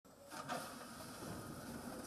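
Daewoo wheeled excavator's diesel engine running faintly, with a short knock about half a second in as the bucket works the broken-up surface.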